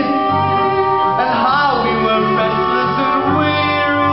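Male singer holding long notes with a wavering vibrato over live acoustic band accompaniment, with bass notes moving underneath.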